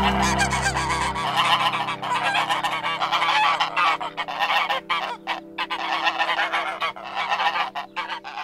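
A flock of geese honking continuously, over the held last chord of a jazz piano and bass track that slowly fades away.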